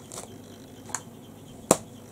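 A faint click twice, then one sharp, loud click near the end.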